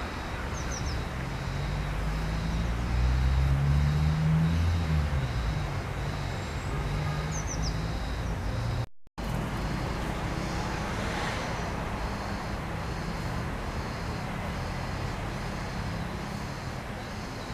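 Road traffic: a motor vehicle's engine note rises and then falls away, loudest a few seconds in, over a steady low traffic rumble. The sound cuts out for a moment about nine seconds in.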